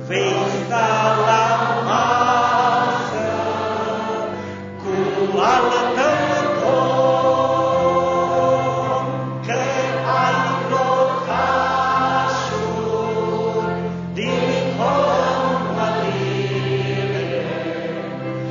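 A congregation singing a hymn together, line by line, with short breaks between the sung phrases every four to five seconds.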